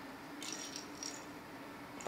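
A cat's plastic rattle ball jingling faintly in a few quick shakes, about half a second to a second in, as a kitten paws at it.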